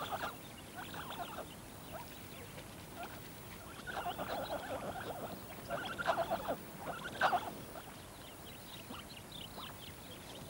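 Highland hyraxes giving short, squeaky chattering calls in three bouts around the middle, with fainter high twittering near the end.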